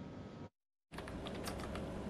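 Faint background room noise on a remote broadcast line, with a few light clicks after the break. The sound cuts out completely for a moment about half a second in.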